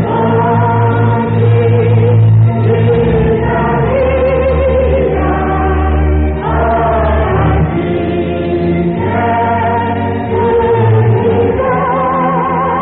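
Gospel music: a choir singing long held notes with vibrato over a steady low accompaniment.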